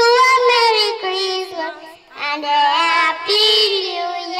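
Young girls singing into handheld microphones, holding long notes with a short pause about halfway.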